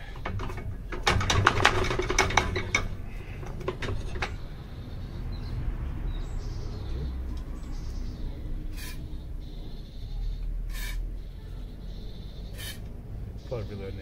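Steel tiller tines and fittings clinking and clanking as they are handled, in a dense cluster in the first few seconds. After that comes a low steady rumble with a few isolated light clicks.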